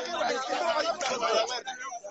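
Several people talking at once: overlapping chatter of a crowd, with no single clear voice.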